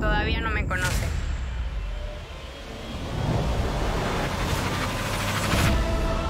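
Trailer sound design. A short wavering, warbling tone plays at the start, then a low rumble with a whooshing noise that fades about two seconds in and swells again toward the end.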